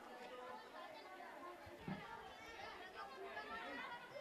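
Many children talking at once, an indistinct hubbub of young voices, with one brief low thump a little under two seconds in.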